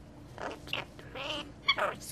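Rainbow lorikeet chattering in short, high calls, with a brief rapid rattle about three quarters through and a louder sweeping call near the end.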